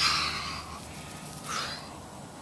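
A man breathing out in a long, audible exhale that fades away over the first half-second or so, then a second, shorter breath about one and a half seconds in.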